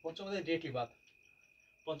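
A man speaking Bengali briefly. In a pause of about a second, a cricket's high, evenly pulsing chirp and a thin steady high tone are heard in the background.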